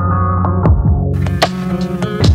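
Lo-fi hip-hop beat played on a portable sampler: a sustained bass and chord with drum hits about every three-quarters of a second. The beat sounds muffled, its high end filtered away, until a little over a second in, when it turns bright again suddenly.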